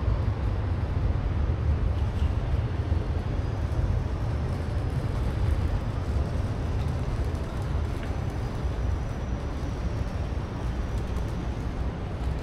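Steady low rumble and hiss of a large concrete railway-station concourse, with no distinct events standing out.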